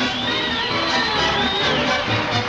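Big band with brass playing lively stage music.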